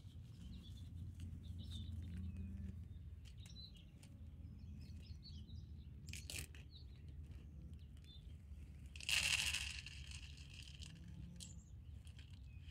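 Small birds chirping over a low steady outdoor rumble, with a brief louder rustling noise about nine seconds in.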